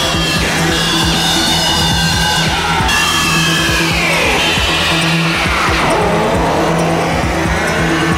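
Live electronic synthesizer improvisation: a cluster of swooping tones glides slowly downward for a few seconds and turns back upward near the end, over a steady low drone that pulses on and off.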